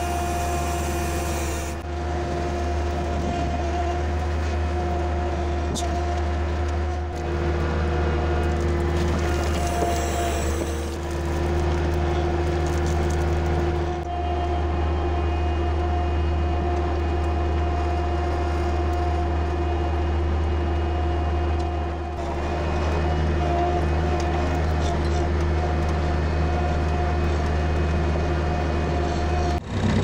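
Tractor engine running steadily, heard close up from the driver's seat, with its note shifting slightly a few times.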